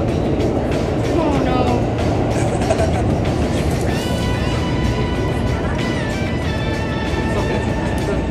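Inside a Tokyo Metro Ginza Line subway car running toward a station: a steady rumble and rush of the train. From about four seconds in, a high whine of several tones joins it and shifts down in pitch.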